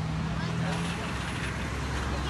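Road traffic: a motor vehicle's low engine hum that fades out about halfway through, over steady road noise, with faint voices in the background.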